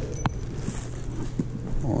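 Steady low hum of indoor room tone with a single short click about a quarter second in; a man's voice starts near the end.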